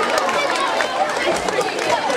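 Audience of schoolchildren talking and calling out all at once, a steady babble of many voices.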